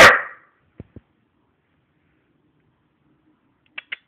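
A dog barks once, loud and close, right at the start. Two faint clicks follow about a second in, and two short, sharp high sounds come near the end.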